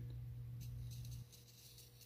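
Faint rustling from a hand handling a strip of washi tape, over a low steady hum that drops in level about a second in.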